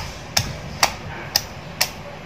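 Wooden pestle pounding chili, lime and aromatics in a mortar: sharp, evenly paced knocks about twice a second, five strikes.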